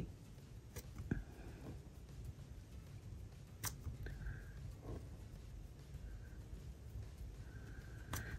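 Faint sounds of a metallic brush marker writing on planner paper: a few soft, brief strokes with light ticks in between.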